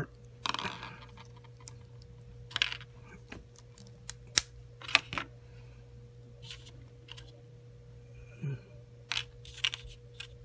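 Scattered small plastic clicks and taps from handling a Figma action figure as its hair and head parts are pulled off and swapped, over a steady low hum.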